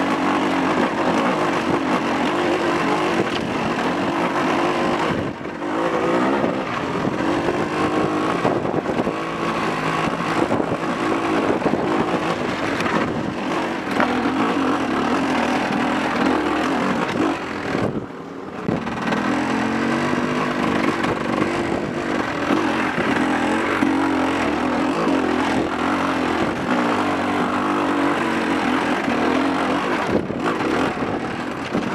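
Enduro dirt bike engine ridden over rough rocky trail, its revs rising and falling constantly as the throttle is worked, with rattling and wind noise close to the rider. The engine note drops away briefly twice, once about five seconds in and again past the middle.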